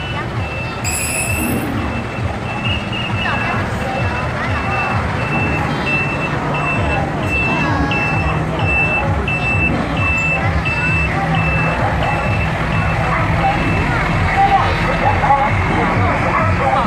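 Heavy diesel trucks running as they pass slowly. A truck's high-pitched warning beeper sounds about twice a second from about two seconds in until about twelve seconds in, loudest in the middle.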